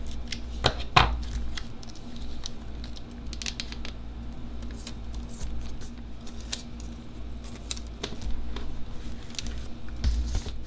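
Scissors snip through a sticker sheet with two sharp cuts about a second in. After that come light rustles, crinkles and small taps as the clear sticker sheets are handled.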